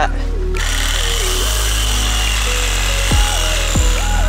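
Electronic background music with a stepped bass line. From about half a second in, a cordless reciprocating saw cuts into the wooden tree stump, a dense hiss-like noise under the music that keeps on to the end.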